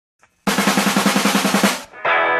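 A fast snare drum roll opening a rock theme song. It starts about half a second in and dies away just before a guitar enters.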